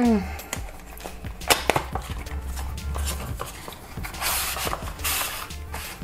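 Cardboard packaging being handled and opened: a few sharp clicks and taps about a second and a half in, then a rustling scrape of card sliding against card between about four and five and a half seconds.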